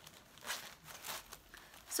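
Faint rustling and crinkling as a woven straw handbag is opened, with the plastic packing filler inside crinkling; a few soft rustles, about half a second and a second in.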